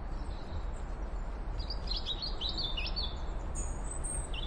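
Birds chirping in a run of short rising and falling notes through the middle, over a steady low rumble of outdoor ambience, with thin high whistled notes at the start and near the end.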